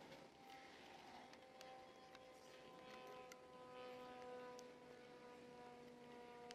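Near silence: a faint steady hum with a few faint ticks.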